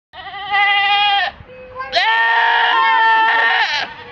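A goat screaming in two long, wavering calls, the second starting about two seconds in and lasting longer.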